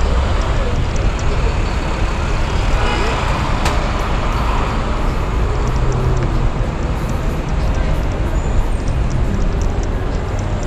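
Busy city street traffic noise with a steady low rumble, heard from a camera moving along the road. A single sharp click comes about three and a half seconds in.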